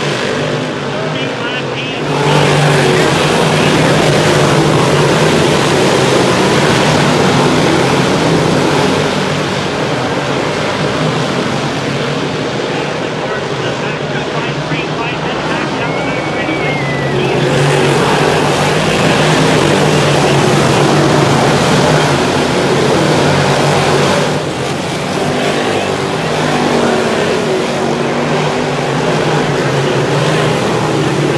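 A pack of 358 dirt-track modified race cars, small-block V8s, running hard around the oval. The sound swells twice as the field comes by, once about two seconds in and again a little after the middle.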